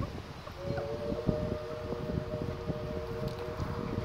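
A distant siren holding a steady chord of a few tones, which comes in about half a second in. Irregular low rustling and knocks close to the microphone run underneath it.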